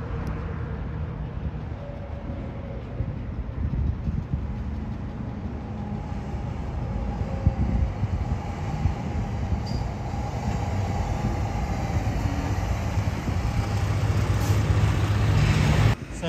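A vehicle engine running nearby, a steady low rumble that grows louder over the last few seconds.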